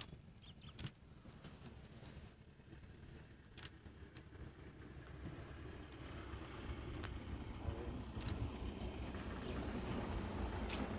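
Faint low rumble that grows louder in the second half, with a few faint clicks.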